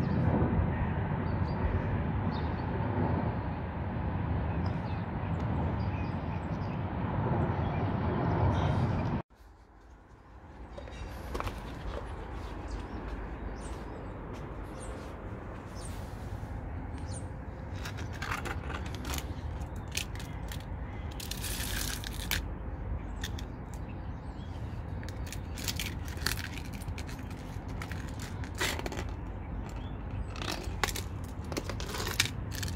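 Steady rushing noise that stops abruptly about nine seconds in. It is followed by a quieter outdoor background with scattered clicks and taps as the broken clone phone and a genuine phone are handled on stone paving.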